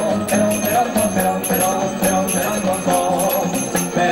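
Finger cymbals (zills) struck in a quick repeating pattern over Middle Eastern belly dance music with a steady melody and bass line.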